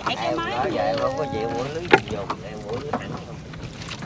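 Fishing net being hauled by hand over the side of a wooden boat, water splashing and dripping off the mesh, with one sharp knock about two seconds in. Voices talk through the first half.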